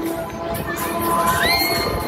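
Riders shrieking and shouting on a spinning Break Dancer fairground ride. One high scream rises in pitch about two-thirds of the way in and is held.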